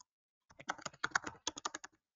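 Typing on a computer keyboard: a quick run of about fifteen keystrokes starting about half a second in.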